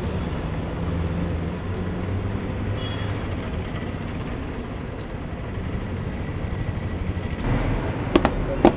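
Steady low rumble and hiss of outdoor background noise, with a few faint clicks.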